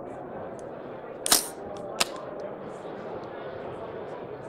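Two sharp mechanical clacks from an airsoft rifle being handled, about two thirds of a second apart, the second shorter and crisper. Behind them is a steady background of crowd chatter.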